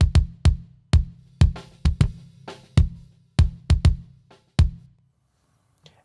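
Original kick drum track played back solo: about a dozen sharp, deep kick hits in an uneven drum pattern, with a faint haze of spill from the rest of the kit between them. The hits stop shortly before the end.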